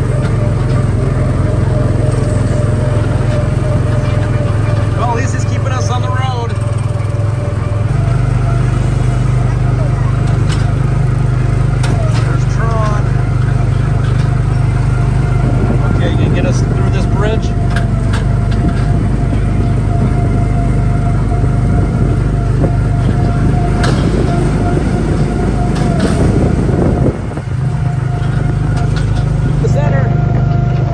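Small engine of a Tomorrowland Speedway ride car running steadily under way, with a low hum that briefly dips near the end.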